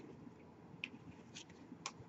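Near silence with three faint, short clicks from tarot cards being handled.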